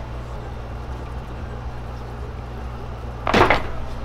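A steady low hum with a faint hiss under it. Near the end comes a short burst of handling noise as a brass-nozzled air blow gun is picked up and worked with.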